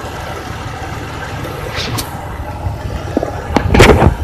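Older Chrysler's engine running steadily with a low rumble under the open hood, a small click about two seconds in, then a sudden sharp noise near the end: something in the engine bay just made a weird noise.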